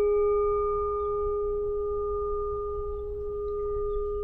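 A struck singing bowl rings out with one steady, clear tone and fainter higher overtones. The overtones die away first while the main tone slowly fades.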